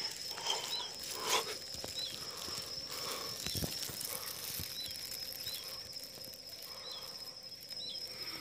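Scrub ambience: a steady high insect drone, with a bird repeating a short chirp every second or so. Leaves and twigs rustle and crackle as the bush is pushed through, loudest about a second in.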